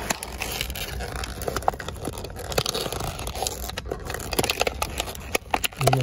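Cardboard box and paper packaging scraping and crackling in the hands, a string of small irregular rustles and clicks, as a tightly packed OBD digital gauge is worked out of its box. A low steady rumble runs underneath.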